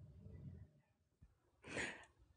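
Near silence, then a short breathy exhale, like a sigh, from a person near the end.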